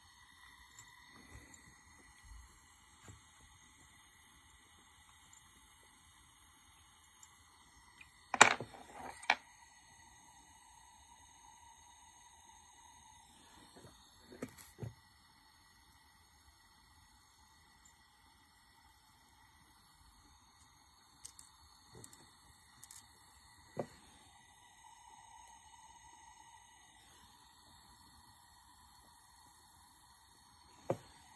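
Jeweller's soldering torch burning quietly with a faint steady whine, and a few sharp clicks and taps from the soldering pick and metal on the honeycomb soldering board, the loudest about eight seconds in.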